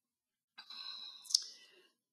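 Silence, then a faint breath-like sound at a microphone with one sharp click a little past the middle.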